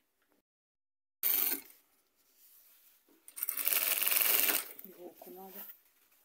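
Industrial lockstitch sewing machine (Jack) stitching in two short runs: a brief burst about a second in, and a longer run of about a second around the middle.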